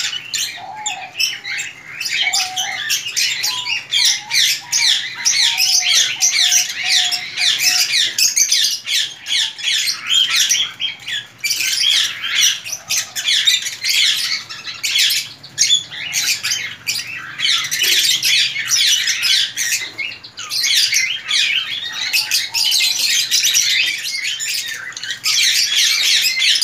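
Many small cage birds chirping and chattering continuously in a busy aviary, dense and high-pitched, with a few lower-pitched calls in the first several seconds.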